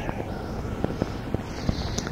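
Background noise of a small portable cassette recording: steady hiss and low hum, with a few faint clicks.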